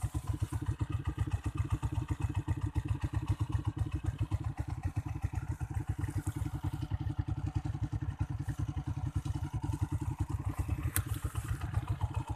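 Honda TMX's single-cylinder four-stroke engine idling steadily with an even, rapid firing beat. A sharp click sounds near the end.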